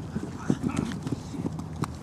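Irregular footfalls and light thuds of several players running on artificial turf, with a few sharper taps, plus faint voices in the background.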